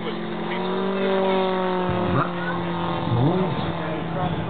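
Engine of a large-scale radio-controlled model biplane droning steadily as it flies an aerobatic maneuver, turning a 32-inch propeller at around 4,200 RPM; its pitch rises slightly and then eases back down.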